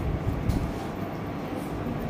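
Steady low rumble of background noise, with a faint click about half a second in.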